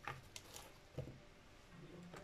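Faint, soft taps and light knocks of chopped fruit and vegetable pieces being put into a clear plastic bowl, a few in the first second, then quiet handling.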